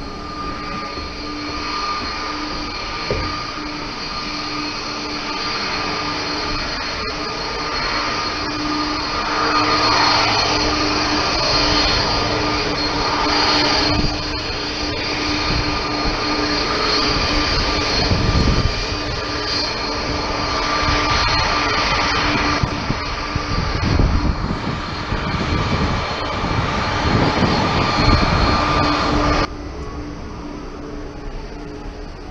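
Airport apron noise on an open rooftop: steady whine and rumble of jet aircraft engines with gusts of wind on the microphone, cut off abruptly near the end.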